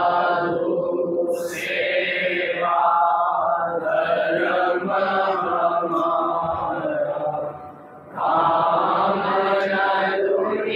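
Devotional Hindu mantra chanting: long, held sung lines, with a short break for breath about three-quarters of the way through.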